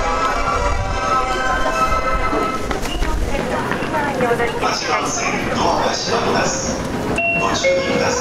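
A railway station's departure melody plays for the first couple of seconds as steady held notes. A recorded voice announcement follows, and a short chime sounds about seven seconds in.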